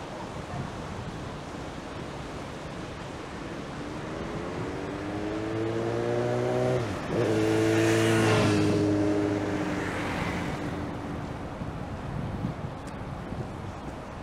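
A motor vehicle passes close to a moving bicycle. Its engine note rises over a few seconds, breaks off briefly about halfway through, then is loudest just after and fades away, all over a steady rush of wind and road noise.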